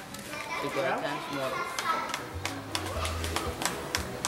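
Voices of several people, children among them, talking and calling out, with scattered light clicks.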